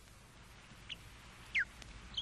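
Two short bird chirps, each falling quickly in pitch, about a second in and near the end, over a faint steady hiss.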